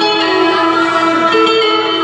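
Live amplified instrumental music: a steady held drone note under a shifting melody, played by a band through PA speakers.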